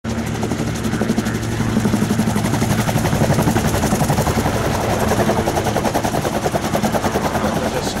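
Rotax 912S four-cylinder engine of a gyroplane running at landing and taxi power, driving its pusher propeller, with the fast rhythmic beating of the spinning two-blade rotor over it.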